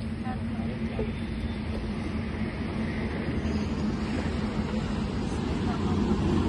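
Steady low mechanical rumble with a constant low hum, the noise of machinery running somewhere unseen, with faint background voices.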